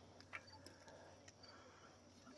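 Near silence: faint background hiss with one soft click about a third of a second in.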